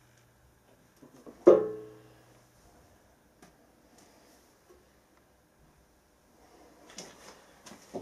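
Hand-operated hydraulic test pump being worked: one sharp metallic strike about a second and a half in that rings on with a steady pitched tone for about a second, followed by a few faint ticks.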